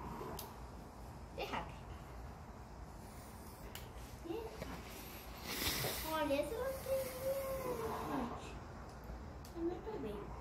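Small plastic doll accessories handled by hand: a few light clicks and a short rustle a little past the middle. A child's voice sounds briefly in the middle, with one drawn-out note.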